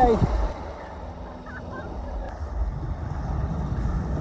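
Wind rumbling on the microphone, with small waves washing up on a sandy beach.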